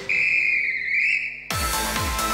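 The electronic dance backing track drops out for one long, wavering whistle blast of about a second and a half. Then the track comes back in with its thumping kick drum.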